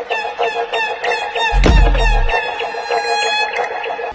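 A rapid run of short, repeated bird-like calls, like clucking, with a single deep boom about a second and a half in.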